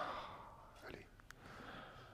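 A short, faint exhale at the start, then quiet room tone with a couple of small clicks about a second in.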